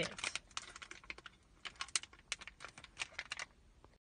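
A plastic packet being handled, giving irregular crinkles and small clicks throughout.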